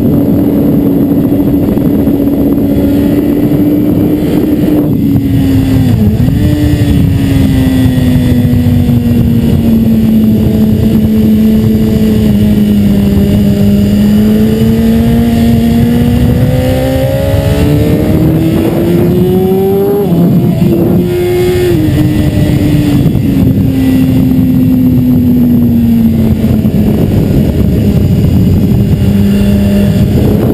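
BMW S 1000 RR's inline-four engine running hard on track, heard close up from a camera mounted on the bike. Its note holds, dips sharply about six seconds in, sinks slowly and then climbs for several seconds, drops abruptly just after twenty seconds, recovers, and falls away again, over a constant rush of noise.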